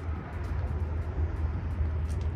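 A steady low rumble with a faint hiss over it.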